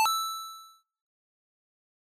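A single bell-like ding sound effect, struck once right at the start and ringing out, fading away within about a second. It is a transition chime introducing a new section of the word list.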